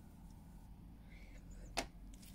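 Quiet room tone with a faint hum, then a single sharp click near the end as a round metal eyeshadow pan is set down on the tabletop.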